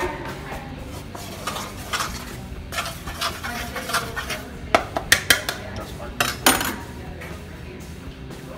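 Kitchen handling noises: a wooden bowl of flour and utensils knocking and clattering on a stone counter, with a quick run of sharp knocks a little past the middle.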